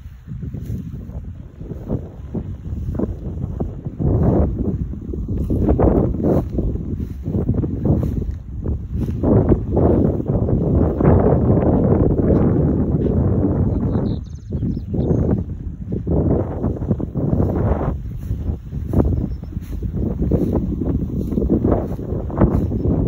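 Wind buffeting the phone's microphone, a loud low rumble that swells and drops in gusts.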